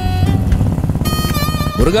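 Royal Enfield single-cylinder motorcycle engine running steadily under way, its low pulsing beat continuous under background music.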